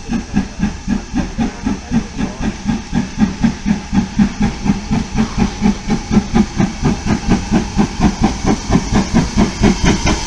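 Steam locomotive L150 working toward the listener: its exhaust beats come evenly at about four a second over a steady hiss of steam, growing louder as it approaches.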